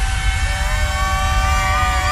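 Electronic music from the stage sound system: a held synth chord over a deep rumbling drone, one note sliding up slightly about half a second in.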